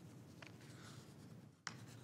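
Near silence: faint room tone in a meeting chamber, with a soft click about half a second in and a sharper click near the end.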